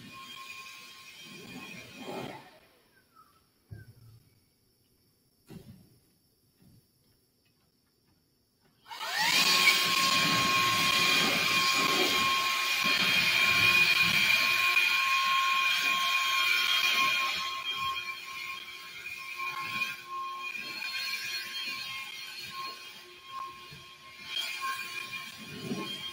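A motor-driven machine starts suddenly about nine seconds in, after several seconds of near silence. It spins up with a short rising whine, then runs with a steady hiss and a high whine, and gets quieter after about eight seconds without stopping.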